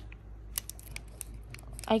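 Fingers picking at a tiny clear plastic toy piece still stuck in its packaging: faint scattered plastic ticks and clicks as it refuses to come free.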